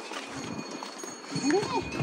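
A horse walking with hooves clopping faintly on a rocky dirt trail. A brief voice sound comes near the end.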